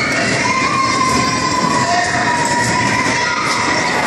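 Inflatable electric bumper cars running on an indoor rink: a steady, loud mechanical noise with a high whine that drifts slowly in pitch as the cars move.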